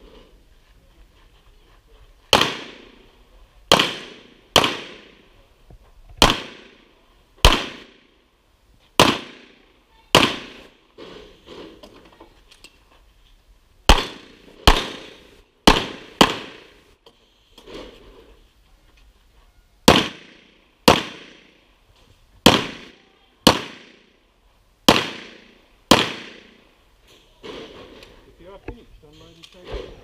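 Pistol shots fired through a practical-shooting course, about eighteen in all: single shots and quick pairs less than a second apart, each with a short echo, with short breaks as the shooter moves between positions.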